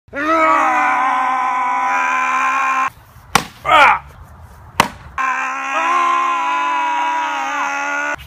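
Men letting out long, loud, strained yells of effort, each held for about three seconds, one at the start and one from about five seconds in. Between them come a short gliding grunt and two sharp clicks.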